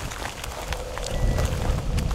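A dog's beeper collar giving one short, steady high beep about a second in: the signal that the German Wirehaired Pointer has stopped moving and is holding on point. The loudest thing is a low rumble of wind on the microphone and footsteps through dry grass.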